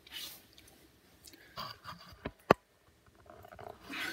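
Soft handling noises and clothing rustle as a person kneels down with the camera, with one sharp click about two and a half seconds in.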